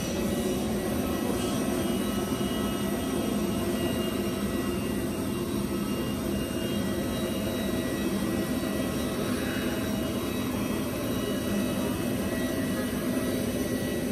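Steady jet aircraft noise on an airport apron: a low rumble with a thin, constant high whine that neither rises nor falls.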